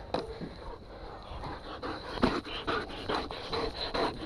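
A dog panting hard, out of breath after a bikejoring race run.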